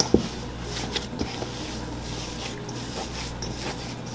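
Hands squeezing and kneading soft tamale masa dough in a stainless steel bowl: a soft, steady squishing with a few light clicks from the bowl.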